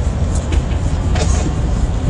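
A steady low rumble with hiss, with a few faint clicks.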